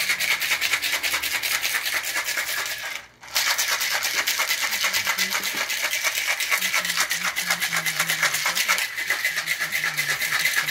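Cocktail shaker being shaken hard: a fast, steady rattle that stops for a moment about three seconds in, then carries on.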